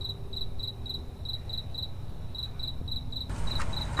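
Crickets chirping in an even train of about five short chirps a second, over a low, steady rumble.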